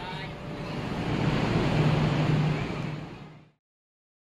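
Ambient noise of a busy station platform: an even rushing noise with a steady low hum that swells over the first two seconds, then fades out to silence about three and a half seconds in.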